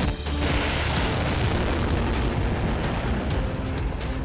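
Missile launching from a truck-mounted multi-tube launcher: a sudden loud rushing blast of the rocket motor starts about half a second in and carries on, easing off near the end, with music underneath.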